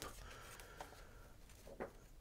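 Near silence: quiet room tone with a couple of faint, soft clicks.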